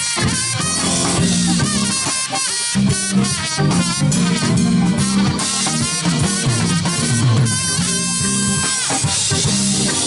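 Live band playing a funk instrumental: drum kit, electric guitar, electric bass and keyboards.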